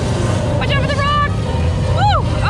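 Steady low rumble of a flying-theater ride's sound and motion, with a brief voice wavering in pitch about a second in.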